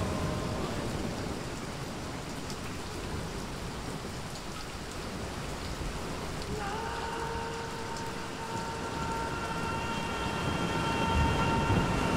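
Recorded rain and sea-surf sound effects played from a vinyl record, a steady wash of noise. About six and a half seconds in, a held musical note with overtones fades in above it and carries on.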